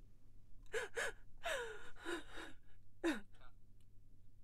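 A woman's shaky, gasping breaths in distress, about six short intakes and sobs in a row, some falling in pitch, the last one about three seconds in.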